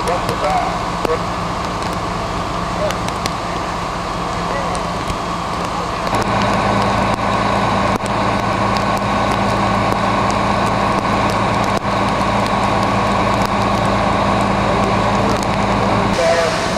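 Fire apparatus diesel engine running steadily with a low hum, under a broad hiss from the hose streams and the fire. The whole sound steps up louder about six seconds in.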